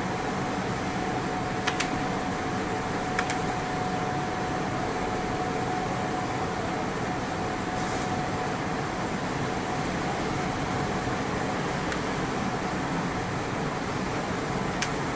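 Steady fan noise with a faint high whine running under it, and two light clicks within the first few seconds.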